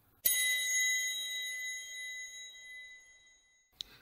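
A single bell chime, struck once about a quarter second in and ringing out with a slow fade over about three and a half seconds. It is a sting sounded to open the interview's quick-fire segment.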